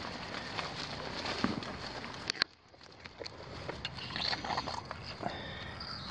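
Handling noise and rustling among shrub branches, with several sharp clicks; the sound drops out suddenly about two and a half seconds in, then a low noise builds again.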